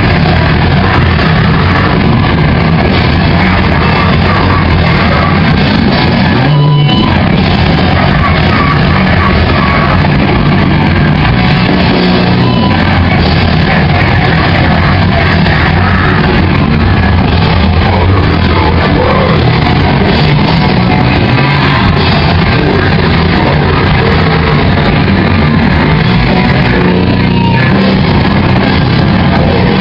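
A rock band playing live and very loud: drums and electric guitar in a dense, unbroken wall of sound, with vocals.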